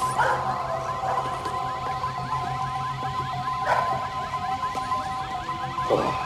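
Car alarm sounding: a fast, evenly repeating warble of about four whoops a second over a steady high tone. A couple of short knocks come through about four seconds in and again near the end.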